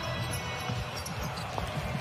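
Basketball bouncing on a hardwood court, heard over a steady background of arena noise.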